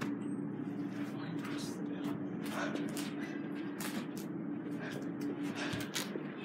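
Dover traction elevator running in its hoistway, heard from the landing: a steady low hum with a held tone and scattered short knocks and rattles as a car approaches.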